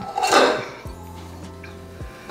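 A glass mixing bowl and plastic spatula clink briefly as the bowl of cake batter is handled, over soft background music that carries on as a low steady tone.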